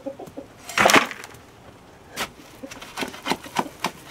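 A shovel scraping up chicken manure and litter from a coop floor and dropping it into a plastic bucket. There is one loud scrape about a second in and a sharp knock a second later, then a string of small knocks and clicks.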